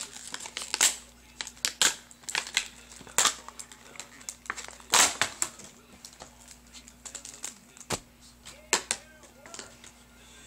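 Plastic blister packaging of a Pokémon Dragons Vault set crinkling and crackling in irregular bursts as it is pulled apart and opened by hand.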